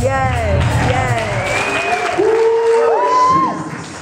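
Church congregation clapping and calling out over music; the music's low accompaniment stops a little past halfway. Two long held voice notes come after that, and the sound dies down near the end.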